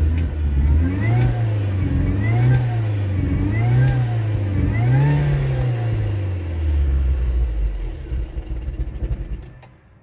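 MINI Cooper four-cylinder engine revved up and down four times, then dropping back toward idle and dying away near the end, stalling as it comes down to idle: a fault that happens every time it returns to idle.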